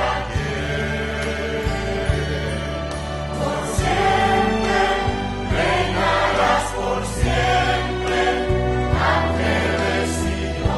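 Mixed choir singing a Christmas song over an accompaniment, with a sustained bass line whose notes change every second or two.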